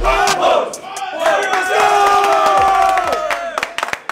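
A football team of young men shouting together in a group battle cry: a short yell, then one long held shout of many voices that breaks off near the end.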